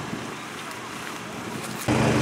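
Faint voices over a steady low engine hum. Near the end the sound jumps to a much louder steady hum from a small engine, the portable power unit for the hydraulic rescue tools.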